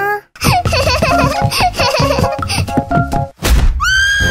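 Background music with cartoon-style vocal sound effects like high-pitched giggling. There is a thump about three and a half seconds in, and a high, held whistle-like tone begins just before the end.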